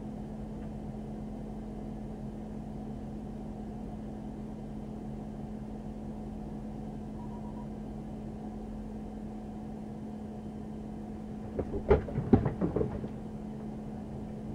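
Steady low hum of an idling police patrol car, picked up by its dash camera, with one constant low tone throughout. Near the end, a man says a word and laughs briefly.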